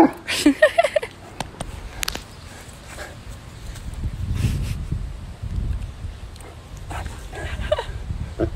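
Saint Bernard barking in the first second, together with a woman's laughter; then a low rumble on the microphone. The dog starts to vocalize again near the end.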